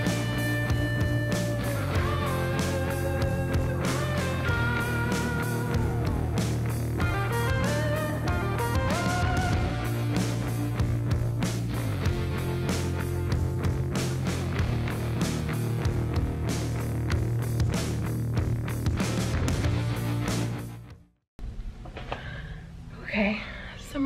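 Rock band playing: an electric guitar lead with held and sliding notes over bass and drums. The music fades out and stops about a second before the end.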